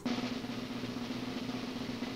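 A steady snare drum roll.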